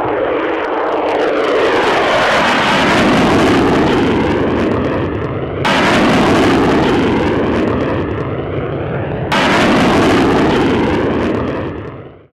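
F-15 fighter jet engines passing low overhead: a loud, rushing jet noise whose pitch falls as the aircraft goes by. The sound changes abruptly twice, about halfway through and again near three quarters of the way, and fades away at the end.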